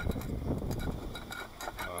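Light clicks and scrapes of a metal cover being worked onto an oil burner's housing so that it clips in place, over a low rumble.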